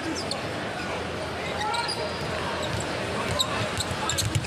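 Basketball being dribbled on a hardwood court over a steady arena crowd murmur, with a faint voice briefly about two seconds in.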